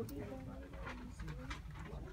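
Indistinct talking from people nearby, with a few light clicks and rustles of handling.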